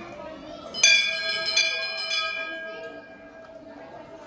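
Hanging brass temple bell struck about three times in quick succession starting a little under a second in, its ringing fading away over the next two seconds.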